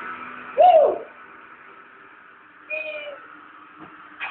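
Two short, high-pitched vocal calls: the first, about half a second in, rises and falls in pitch; the second, near three seconds in, is shorter and holds a steady pitch.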